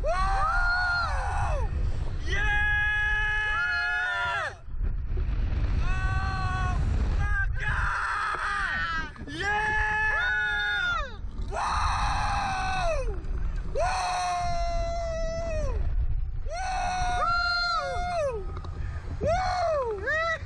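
Riders on a reverse-bungee slingshot ride screaming as they are flung and bounced, a long string of high-pitched screams one after another with short breaks between, over a steady low wind rumble on the microphone.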